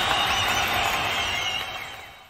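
The final crash of a rock intro jingle ringing out and fading away steadily, with a few faint high glints in it.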